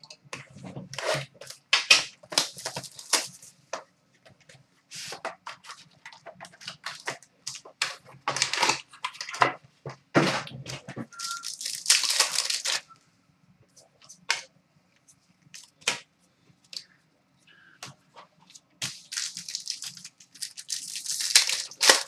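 Plastic shrink wrap being cut and torn off a trading-card box, and a foil card pack torn open and its wrapper crinkled. The sound comes in irregular bursts of crackling and rustling, with a quieter stretch of a few small clicks in the middle.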